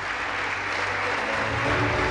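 Audience applauding steadily in a large hall, with music coming in faintly underneath near the end.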